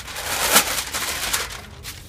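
Gift-wrapping paper crinkling and rustling as a present is unwrapped, loudest about half a second in, then dying away.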